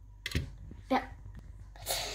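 Quiet handling noises: a soft thump about a third of a second in and a brief rustle near the end.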